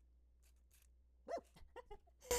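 Near silence: room tone, broken a little past the middle by one brief, faint pitched whine that rises and falls, then a few fainter short squeaks.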